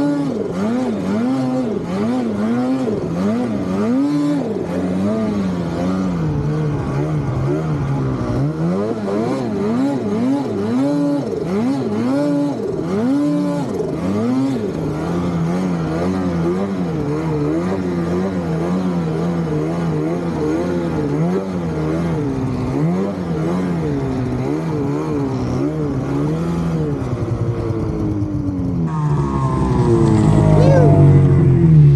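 Snowmobile engine revving up and down again and again as the rider works the throttle through deep powder, with a few steadier stretches around the middle.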